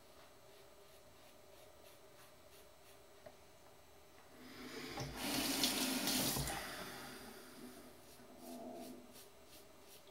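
Bathroom tap water running into the sink for about three seconds, starting about four seconds in and fading away, as a double-edge safety razor is rinsed under it. Before that, only faint room tone.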